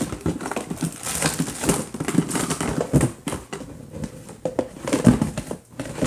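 Plastic bags and plastic containers crinkling and knocking together as a hand rummages through a tub of supplies, in irregular rustles and clicks.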